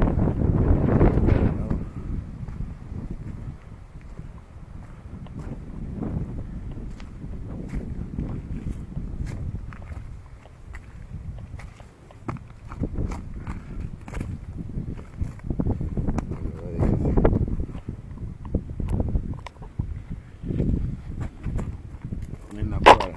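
Wind buffeting the microphone in gusts, strongest in the first two seconds, with scattered scuffs and crunches of footsteps on gravel and dry grass.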